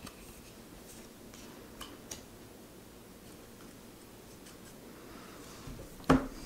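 Laminated tarot cards being handled: a few faint light clicks of card stock in the first couple of seconds, then a soft sliding rustle near the end as one card is drawn off the deck.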